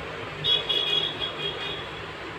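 A high-pitched beeping tone that starts about half a second in, holds steady, then breaks into short repeated beeps before fading near the end.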